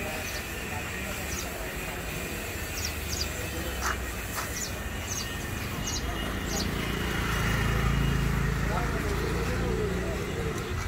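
Street ambience: background voices and a low vehicle rumble that grows louder about seven seconds in, with a few short high chirps.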